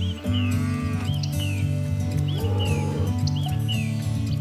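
Dairy cow mooing twice, once early and once past halfway, over background music with a steady repeating bass line.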